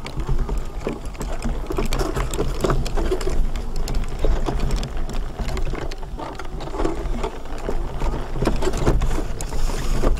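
Wheelchair rolling over rough, bumpy grass and a dirt path, its frame rattling and jolting continually over a low rumble.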